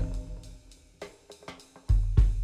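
Bass drum struck twice, about two seconds apart, each stroke a deep boom that dies away, with a few faint taps in between.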